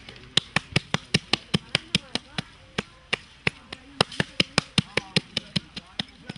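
Hands slapping and patting wet cow dung into cakes: a quick, sharp series of slaps, about four or five a second, with a short pause about halfway.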